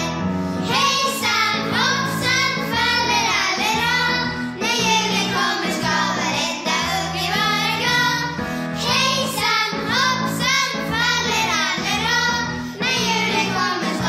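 Children and a young woman, a Lucia and her procession, singing a Lucia song together in phrases, over steady low held tones.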